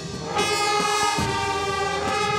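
Brass marching band of trumpets, trombones and saxophone playing sustained chords over regular low beats. A brief dip at the start gives way to a new chord about half a second in.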